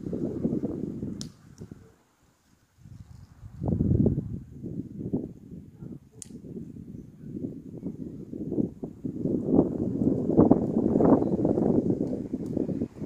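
Wind buffeting the microphone in uneven gusts. It drops away briefly about two seconds in and builds again towards the end, with two short sharp clicks, about one and six seconds in.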